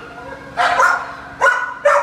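Excited husky mix dog giving short, high yips and barks, three in quick succession.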